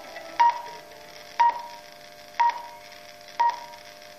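Radio time signal marking the full hour: short beeps of about 1 kHz, one a second, four of them here, over faint steady tones.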